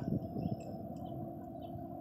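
Faint, scattered bird chirps over a steady low rumble, with a single sharp click at the very start.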